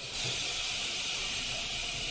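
Steady, high hiss as the stage's trapdoor drop zones close and reset. It sets in abruptly and holds at an even level.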